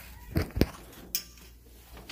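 Three short, sharp clicks and knocks, about half a second in, just after, and a little past a second in, from the lock and handle of a hotel room door being worked.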